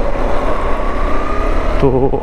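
Motorcycle engine running as the bike rides a rough dirt track, picking up speed gently, with a faint whine that rises slightly in pitch. A man's voice comes in near the end.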